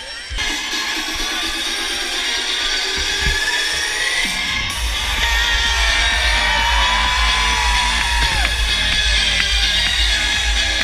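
Live concert music from the stage sound system, heard loud from within an outdoor crowd, with crowd noise underneath. A heavy bass beat comes in about halfway through, and a voice line glides over it.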